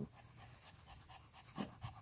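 A small dog panting rapidly and faintly, mouth open and tongue out.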